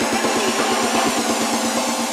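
Electronic dance music build-up: a fast, evenly repeated drum roll of about ten hits a second, with the bass filtered out and a hissy sweep on top.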